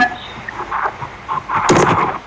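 Brief, garbled fragments of participants' voices and microphone noise coming through a video call as attendees unmute, with a louder burst near the end.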